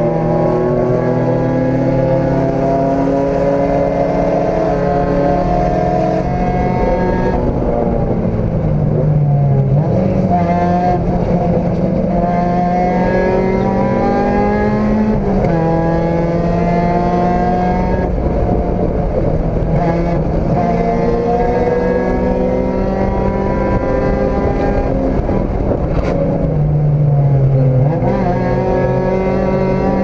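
Race car engine heard from inside the cockpit, pulling hard with its pitch climbing steadily, then dropping sharply at each of several gear changes before climbing again.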